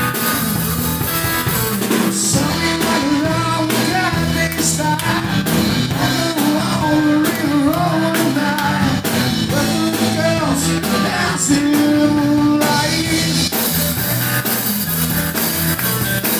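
Live rock band playing electric guitars and a drum kit, with a singer's vocal over them, steady and loud throughout.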